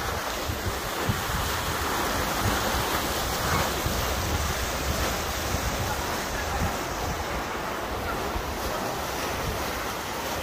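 Steady rushing noise of wind buffeting the microphone over the wash of a busy outdoor swimming pool, with swimmers splashing.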